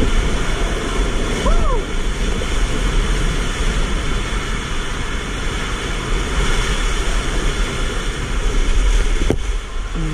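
A loud, steady rush of water and a body sliding down an enclosed tube water slide. A short 'woo' shout comes about a second and a half in, and a single sharp knock near the end as the rider reaches the splash pool.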